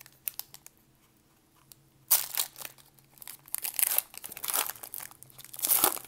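Foil wrapper of a 2019 Prizm trading-card hobby pack being torn open and crinkled by hand: a few faint clicks, then a sudden loud tear about two seconds in, followed by irregular crinkling that swells again near the end.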